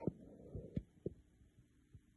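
A few soft, low knocks, about five in two seconds, the first the loudest.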